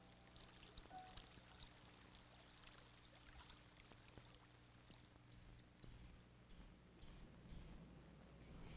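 Faint trickling of water in an icy stream, with scattered light ticks. From about two-thirds of the way through, a bird gives a run of five short high chirps, about two a second.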